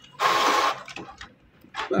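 Canon PIXMA TS5340 inkjet printer feeding out a printed sheet: a loud whir of about half a second, followed by a few fainter clicks.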